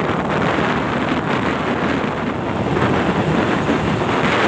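Steady wind rushing over the microphone of a camera travelling along a road, with vehicle and road noise underneath.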